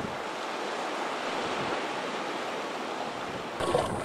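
Sea waves washing, a steady even rush of water. Near the end it gives way to louder splashing in shallow water.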